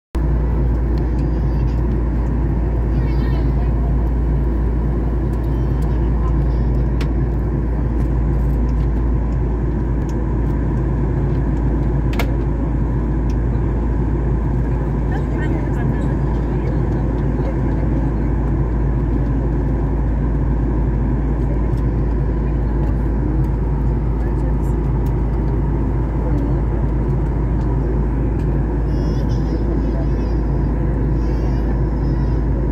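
Airliner cabin noise in flight: a steady, deep rumble and rush from the engines and the air streaming past, heard inside the cabin and holding the same level throughout.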